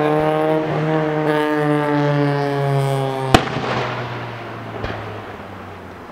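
Fireworks: a single sharp bang about three seconds in, the loudest sound, and a fainter second bang about a second and a half later. Under the first part, a low pitched drone slowly sinks in pitch and fades out soon after the first bang.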